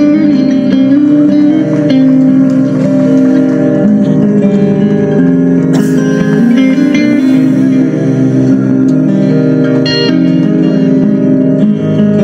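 Heavy-metal band playing live, a slow song led by electric guitar with held, ringing chords and picked notes.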